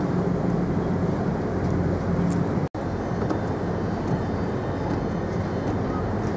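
Steady low drone of a car ferry's engines and deck machinery heard on the open deck, mixed with wind noise. It cuts out for an instant a little under halfway through, then carries on the same.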